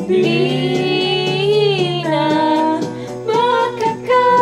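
A female singer singing karaoke into a handheld microphone over a backing track with a steady beat: one long held note that bends up and down, then two shorter notes.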